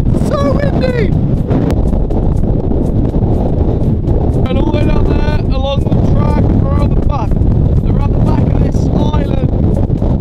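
Strong gale-force wind buffeting the microphone: a loud, continuous low rumble that never lets up, with a man's voice partly heard over it.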